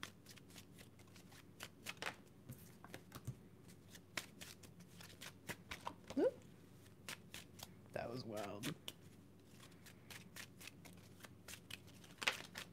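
A deck of cards shuffled by hand, an irregular run of quick card snaps and clicks. A couple of short wordless voice sounds come a little past the middle.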